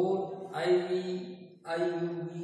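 A man's voice in long, drawn-out, chant-like tones, in two stretches with a short break about a second and a half in.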